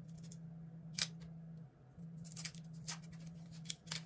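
A plastic USB-C power adapter being handled and its protective plastic wrap picked at. There is one sharp click about a second in, then quick crisp crackles in the second half, over a steady low hum.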